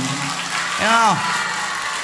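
A man's chanted note trails off at the start, over an audience clapping and laughing. About a second in comes one short vocal sound that rises and falls.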